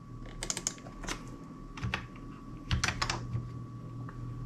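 Computer keyboard keystrokes: a quick run of taps about half a second in, a single tap or two around one and two seconds, and another short run near three seconds, as a dimension value is typed in and entered, over a faint steady hum.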